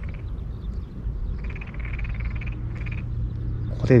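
Tokyo daruma pond frogs calling from a flooded rice paddy: short pulsed croaks, 'ngegege', with a longer run of them about a second and a half in. A steady low rumble sits underneath.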